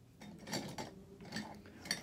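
Rummaging through a desk for small craft supplies: a few light clicks and clinks of small objects being moved about.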